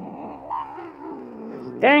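Calico cat growling in one long, wavering, unbroken growl: an upset, fearful cat after having her nails clipped and an accessory put on her.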